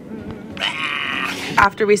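A person's voice: one drawn-out, high, wavering vocal call lasting about a second.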